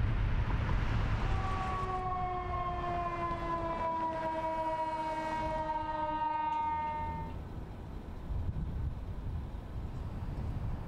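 Ambulance siren sounding one long tone that slowly falls in pitch for about six seconds, then stops, over the low rumble of city street traffic.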